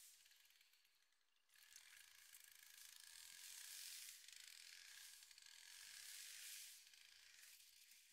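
Near silence: a faint hiss that rises about a second and a half in and fades out near the end.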